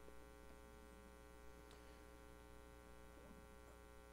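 Near silence: a faint, steady mains hum.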